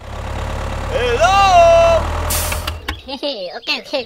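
Tractor engine idling with a steady low rumble that cuts off just before three seconds. About a second in, a high voice-like call rises and then holds over it, and a short hiss follows. The last second holds quick chirping, voice-like sounds.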